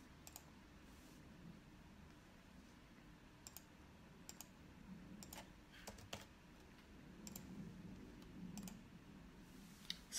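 Near silence: low room hum with about nine faint, irregular clicks of typing.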